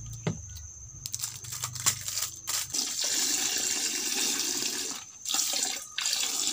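A few handling clicks, then milk poured from a small carton in a thin stream into a bucket of liquid, splashing steadily for about two seconds, breaking off briefly, then pouring again near the end.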